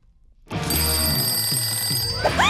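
Cartoon alarm clock ringing over music, starting after a brief silence about half a second in.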